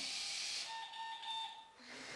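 A Bee-Bot floor robot's electronic beep: one steady tone lasting about a second, starting just past half a second in. A breathy hiss comes just before it, at the start.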